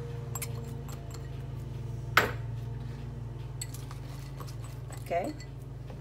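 Kitchenware sounds as chopped green onions are tipped from a small glass bowl into a stainless-steel pot of mashed potatoes: faint light taps and one sharp clink about two seconds in, over a steady low hum.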